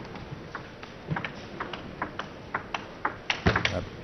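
A table tennis rally: the celluloid ball clicks sharply off the table and the players' rubber-faced bats in quick alternation, about three or four clicks a second, loudest near the end.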